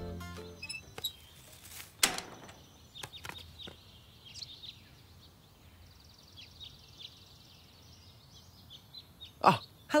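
Birds chirping, with a short trill of rapid repeated notes in the middle, over quiet outdoor ambience. A sharp knock about two seconds in is the loudest sound, and a thud comes near the end.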